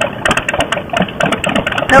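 Harley-Davidson V-twin motorcycle engine running at low speed with a rapid, even beat of firing pulses, as the bike pulls away from a stop.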